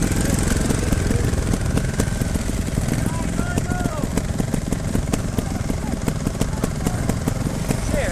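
Trials motorcycle engines idling, a steady low running sound, with faint voices in the background.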